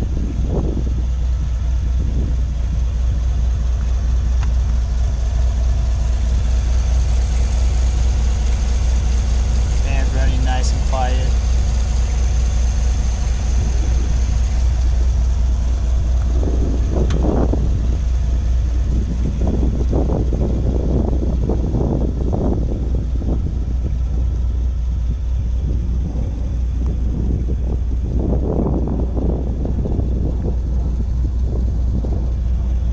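A 2017 GM L83 5.3-litre V8, swapped into a Jeep Wrangler LJ, idling steadily. Wind gusts on the microphone now and then.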